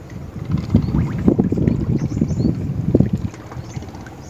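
Wind buffeting the microphone in uneven low gusts, starting about half a second in and easing off near the end.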